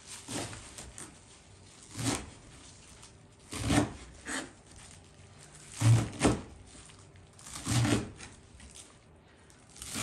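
Leafy cilantro being handled and cut with a knife on a wooden cutting board: about six scattered knocks and rustles, the loudest a pair of knocks about six seconds in.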